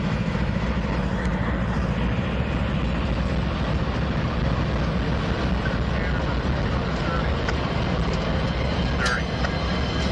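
Norfolk Southern GE diesel-electric locomotives passing close by: a steady, deep engine drone with the rolling of wheels on the rails, and a brief sharp squeak near the end.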